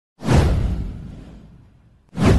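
Whoosh sound effect of an animated title intro: a sudden rush with a deep rumble underneath, starting a moment in and fading away over about a second and a half.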